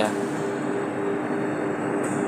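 A steady mechanical hum with two low, even tones.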